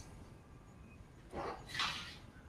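Two brief rustling, scraping handling noises about one and a half seconds in, as objects are shifted on a table.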